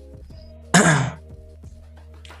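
A man clears his throat once: a short, rough burst about three-quarters of a second in, over faint steady background music.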